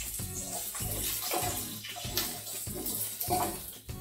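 Carrot and celery sticks sizzling in a little oil in a hot grill pan, a steady hiss with short scrapes as a wooden spoon stirs them. Background music plays underneath.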